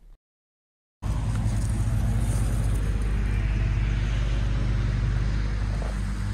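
About a second of silence, then steady wind buffeting the microphone in the open air, a constant low rumble with a rushing hiss above it.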